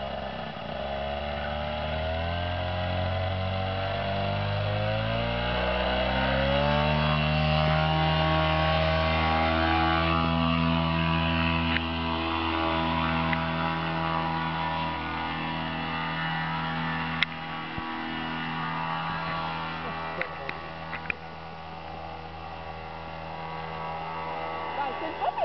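Backpack paramotor engine and propeller throttling up over the first several seconds to full takeoff power, then running steadily at high power. Its pitch dips briefly, with a sharp click, about two-thirds of the way through, and it eases slightly near the end as the paramotor climbs away.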